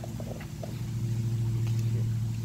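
A motor vehicle's engine running with a steady low hum, growing louder through the moment. There are a few faint short dog whines near the start.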